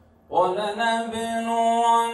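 A man reciting the Quran in a melodic chant, coming in about a third of a second in and holding one long note.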